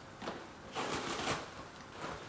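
A frozen, stiff T-shirt being handled and pried apart by hand, giving a few short, faint rustles and crackles of iced fabric.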